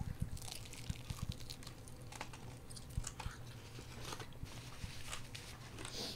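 Faint, scattered chewing and biting: people eating sauced chicken wings, with irregular small wet clicks and mouth sounds.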